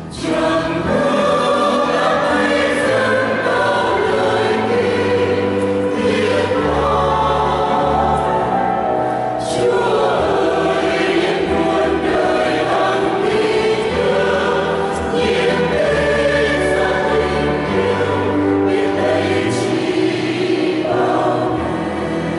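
Mixed choir of women's and men's voices singing a Vietnamese Catholic hymn in parts, in long phrases of several seconds each.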